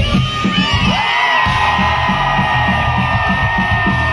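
Live rock band playing amplified in a club, heard from within the audience: drums and guitar, with the low end dropping out briefly about a second in and a long held high note coming in over it. The crowd whoops and cheers over the music.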